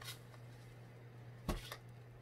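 Cross-stitch fabric being handled: a faint rustle at the start, then a brief, sharper handling noise about a second and a half in, over a steady low hum.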